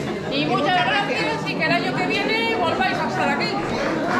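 Only speech: a woman talking, with chatter from other people in the room.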